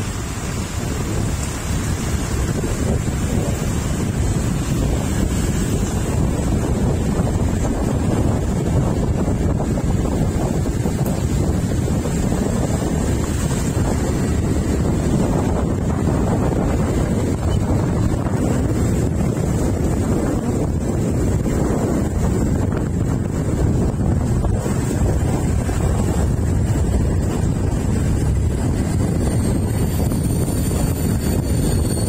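Wind buffeting the microphone on a moving motorcycle: a loud, steady rush that covers the bike's road and engine sound.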